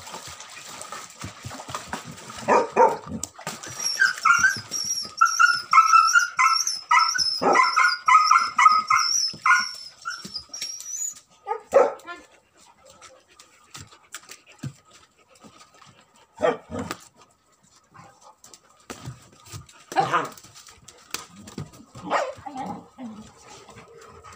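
Tibetan mastiff puppies barking and yelping. There is a fast run of high-pitched yelps from about four to ten seconds in, then an occasional single bark every few seconds.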